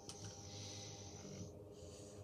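A faint, soft breathy hiss from a pipe smoker puffing on a tobacco pipe, lasting about a second and a half before it stops.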